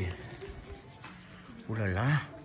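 A person sipping hot chocolate from a clay mug, a soft slurping of the hot drink, followed by a short exclamation of "uy" near the end.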